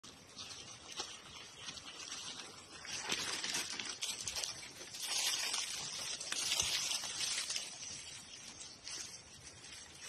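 Rustling and crunching of dry leaves and brush, rising in two louder stretches, about three seconds in and again from about five to seven seconds, with a few faint snaps.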